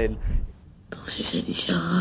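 Speech only: a man's voice trailing off, then after a short pause a woman's hushed, breathy line of film dialogue.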